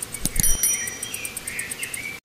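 Cricket-like insect chirping in a fast, even pulse of about eight chirps a second, with a bird twittering over it. Two short soft thumps come near the start.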